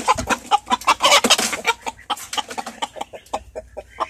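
Roosters clucking and squawking amid quick, irregular scrabbling and flapping against a wire cage as one rooster struggles to squeeze out under its edge; busiest in the first two seconds, then thinning out and quieter.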